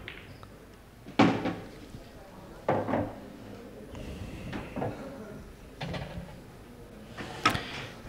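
Pool shot on an English pool table: a sharp clack of the cue and balls about a second in and another knock a second and a half later, then a few fainter knocks and thuds.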